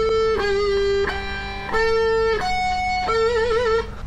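Gold-top Les Paul electric guitar playing a slow lead line of single sustained notes, changing pitch about every half second. The last note wavers with vibrato near the end.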